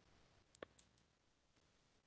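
Near silence with two faint clicks a little over half a second in, from a computer mouse clicking to advance a presentation slide.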